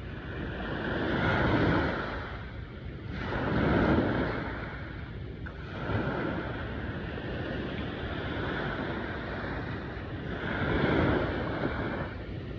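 Small ocean waves breaking and washing up the sand at the shoreline, the surf swelling and fading several times.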